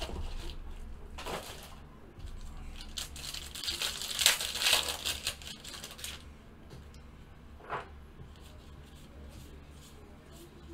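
Plastic wrappers of baseball card packs being torn open and crinkled, in repeated rustling bursts that are loudest about four to five seconds in, then die down.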